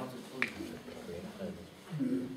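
A single sharp click about half a second in, over faint murmur and room sound in a hall.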